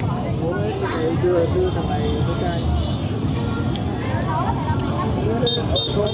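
People talking, with music playing in the background.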